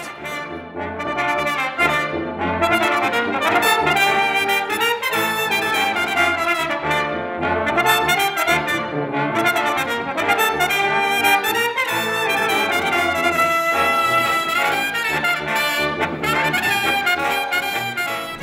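Brass ensemble playing live: a rotary-valve trumpet carries the melody over other brass and a tuba bass line. The music starts right at the beginning and runs at a steady, full level.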